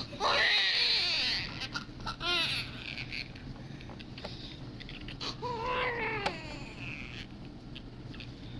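Newborn baby crying in three bouts: a long cry in the first second and a half, a short one a little after two seconds, and another near six seconds.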